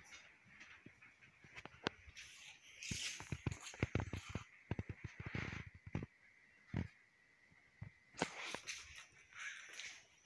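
Irregular clicks, knocks and rustling from someone moving about and handling things, busiest in the middle and again near the end, with a faint steady high whine underneath.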